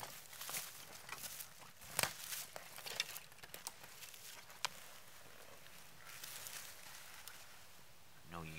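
Footsteps crunching in dry fallen leaves: a few irregular steps over the first four or five seconds, the loudest about two seconds in.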